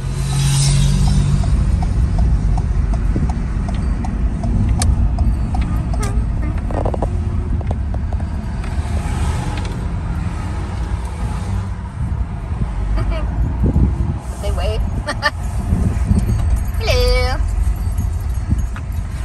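Road and engine noise inside a Ford van's cab while it drives: a steady low rumble, with a short pitched, voice-like sound near the end.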